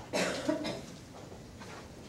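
A person coughs, two quick coughs close together shortly after the start.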